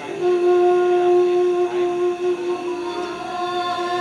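A single voice holding one long sung note as part of the play's music, steady in pitch.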